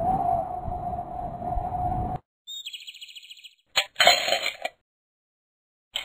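Cartoon sound effects: a held tone that cuts off about two seconds in, then after a short gap a quick run of high chirps and a brief noisy burst.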